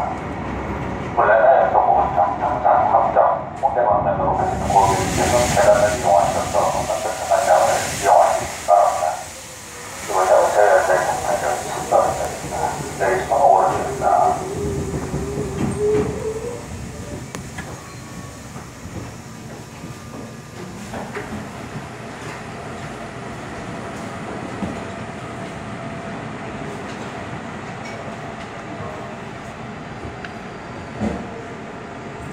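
Seoul subway Line 2 train braking to a stop: loud, choppy running noise from the wheels and running gear, with a whining tone that falls in pitch and dies away about sixteen seconds in. After that the stopped train gives a steady, quieter hum.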